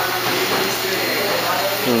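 Steady factory-floor background noise, a constant hiss with a low hum under it, and faint voices in the background.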